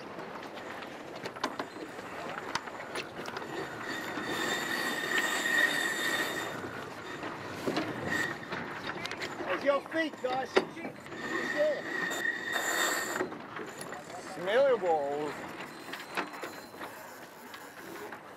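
Onboard sound of a GC32 foiling catamaran during a tack: wind and water rushing past, with a high-pitched squealing whine that rises and fades twice. Short crew shouts cut through the noise, one clearly about three-quarters of the way in.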